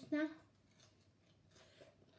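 Faint crisp crackling of fresh lettuce leaves being handled and eaten, with a few small crackles near the end.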